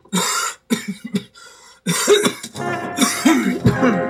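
A man coughing hard several times, then choking and gagging with strained voice sounds that rise and fall.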